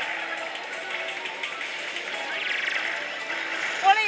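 Oshu! Bancho 3 pachislot machine playing its electronic music and effects over a constant dense din, with a louder sudden effect just before the end.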